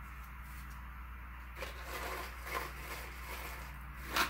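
Soft rustling and handling sounds of hands working over a seed tray and picking up a paper seed packet, starting about one and a half seconds in, over a steady low hum.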